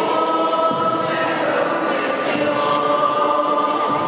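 A crowd of devotees singing a hymn together, holding long notes.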